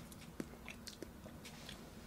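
Faint, scattered light clicks of chopsticks picking up a piece of grilled meat from a plastic takeout container.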